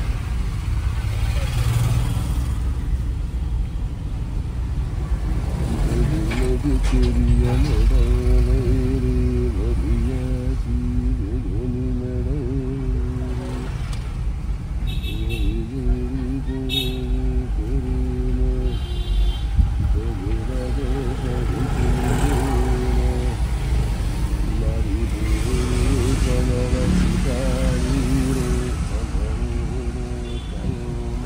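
Inside the cabin of a Maruti Suzuki A-Star driving slowly: a steady low engine and road rumble. A person's voice on held, sung-like pitches comes and goes over it from about six seconds in, with a few short high beeps around the middle.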